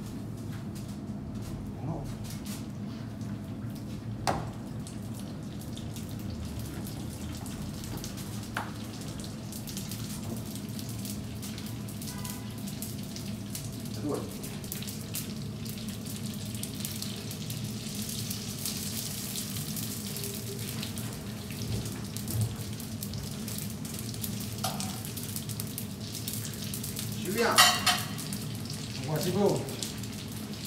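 Calzoni deep-frying in hot oil in a stainless-steel fryer: a steady sizzle and bubbling that grows stronger about a third of the way in as the dough puffs up. A few light knocks sound over it, and a louder brief burst near the end.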